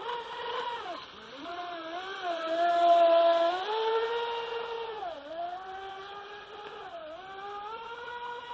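Whine of the Feilun FT011 RC speedboat's 4S brushless motor running at speed. Its pitch dips and recovers three times, about one, five and seven seconds in, and it is loudest around three seconds in as the boat passes close.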